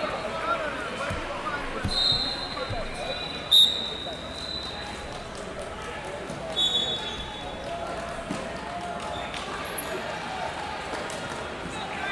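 Din of a busy wrestling hall: distant shouting voices with a few short high-pitched squeals, from shoes on mats or referees' whistles. One sharp smack about three and a half seconds in is the loudest sound.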